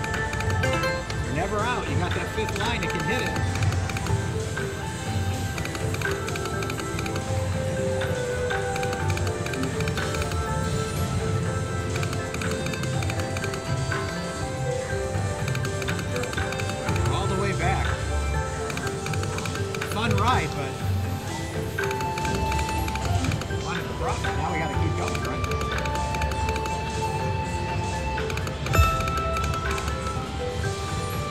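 River Dragons Sapphire video slot machine playing its electronic music and sound effects as the reels are spun again and again, with casino chatter in the background. A few rising sweeps sound near the middle, and a short louder sound comes near the end.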